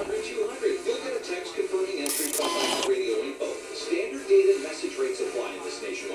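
Broadcast audio heard from a small loudspeaker across a room: a voice over music, thin and without bass. A brief hiss cuts in about two seconds in.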